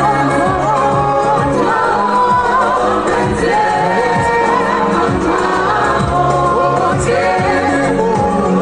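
Several singers, women and a man, singing a song together into handheld microphones over instrumental backing with a steady beat.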